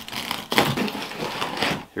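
Box cutter slitting the packing tape along a cardboard box's seam: a rough scraping and tearing of blade through tape and cardboard, starting about half a second in and lasting over a second.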